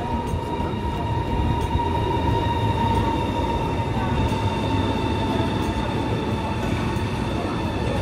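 A CRH 'Hexie' high-speed electric train running along the station platform as it pulls in: a steady rumble with a high, even whine over it.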